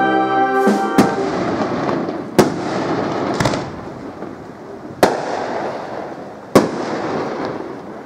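Aerial firework shells bursting overhead: five sharp bangs a second or two apart, with crackling between them. In the first second a brass band's sustained chord is still sounding before the bangs start.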